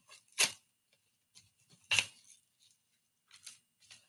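Plastic lunch trays being handled: two short knocks, about half a second in and again at two seconds, with a few fainter rustles between.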